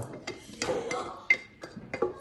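A spoon and kitchenware knocking and clinking lightly: a handful of short knocks, with one brighter ringing clink a little past the middle.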